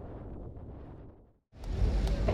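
Soft wind and rough-water noise, with no distinct tones, fades out to a moment of silence. Just past the middle a low outdoor rumble fades in.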